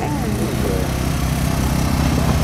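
A small engine running steadily with an even low rumble, and faint voices in the first half-second.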